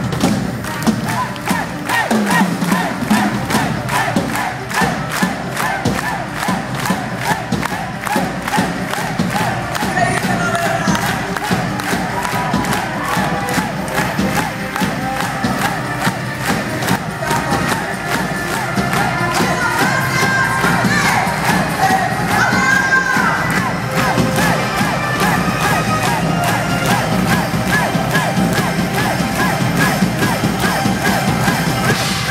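Concert audience cheering and shouting, with fast clapping that is densest in the first third.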